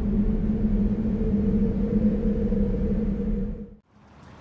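Intro sound effect: a steady low rumbling drone with a held two-note hum, cutting off suddenly near the end.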